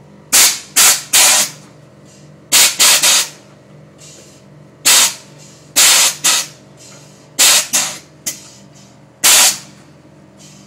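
Air-bag suspension valves on a Dodge Charger letting off short, sharp blasts of air as the bags are switched: about a dozen hisses, mostly in quick clusters of two or three. A steady low hum runs underneath.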